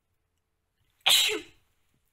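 A woman sneezes once, about a second in: a single sudden burst lasting about half a second.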